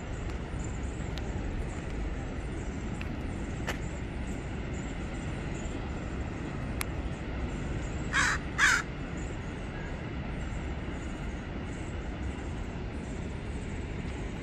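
Steady rushing noise of water pouring over the dam's spillway, with a low rumble underneath. About eight seconds in, a bird caws twice, two short harsh calls close together.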